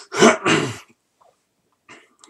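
A man clearing his throat, two quick rasps in the first second.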